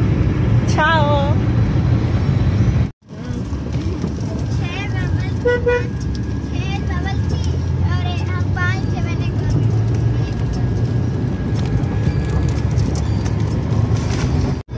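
Steady road and engine noise inside a moving car, with high-pitched wavering voice sounds over it. A short horn toot comes about five and a half seconds in.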